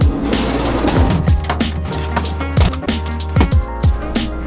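Background electronic music with deep kick drums over a sustained bass line; a hissing swell opens it and fades away over about a second.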